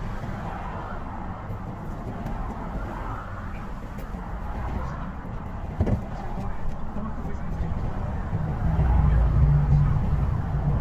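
A car's engine and road noise heard from inside the cabin in slow traffic: a steady low rumble that grows louder from about eight and a half seconds in, as the car pulls forward. A brief knock about six seconds in.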